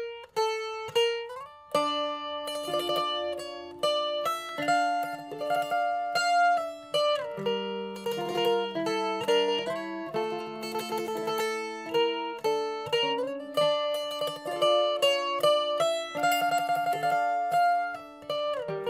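Mandolin music: a slow melody of plucked notes over lower held notes, the long notes sustained by rapid tremolo picking.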